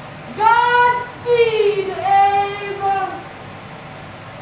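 A high voice sings a few long, held notes without words. The first note is the highest, later ones slide lower, and the singing stops about three seconds in.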